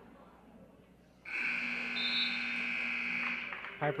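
Gym scoreboard buzzer sounding once, a steady tone of a little over two seconds that starts and stops abruptly, marking the end of the first period of a wrestling match.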